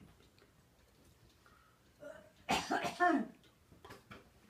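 A person coughing, two quick coughs a little past halfway through, against quiet room tone.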